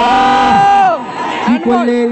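A man's long, drawn-out excited shout at a shot on goal, held on one high pitch and dropping off about a second in, followed by more commentary speech.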